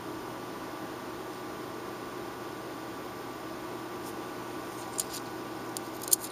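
Steady room tone: a low hiss and faint electrical hum, with two or three faint small clicks about four and five seconds in.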